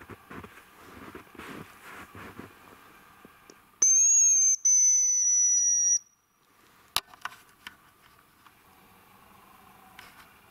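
Footsteps crunching in snow for the first couple of seconds. After a pause come two long, thin, high whistles, the second a little lower and longer, from a hazel grouse decoy whistle being blown to call the birds. A sharp click follows, then a couple of fainter clicks.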